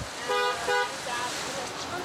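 Vehicle horn giving two short toots in quick succession, over faint street noise.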